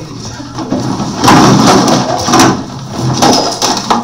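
Loud rustling and scraping with several sharp knocks, starting about a second in and easing off near the end.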